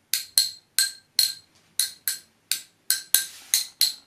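Two reusable drinking straws tapped against each other: about a dozen quick clinks in an uneven rhythm, each with a short bright ring.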